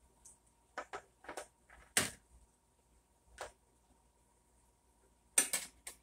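Scattered short metallic clacks and knocks of kitchen utensils, tongs and a spatula against a cast-iron skillet. The loudest comes about two seconds in, with a quick cluster near the end.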